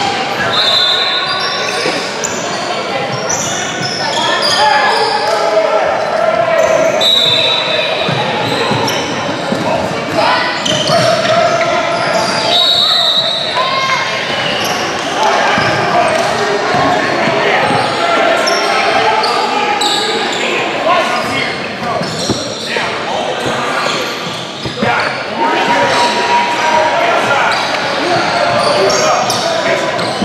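Basketball bouncing on a hardwood gym floor amid indistinct shouts and chatter from players and spectators, all echoing in a large gym hall.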